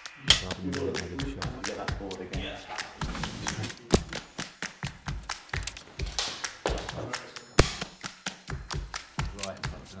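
A film clapperboard snaps shut just after the start, followed by a short laugh, murmured talk and many small taps and knocks over quiet background music. Two more sharp claps come about four and seven and a half seconds in.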